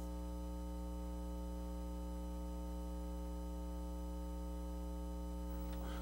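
Steady electrical mains hum with a buzz of higher overtones, unchanging throughout.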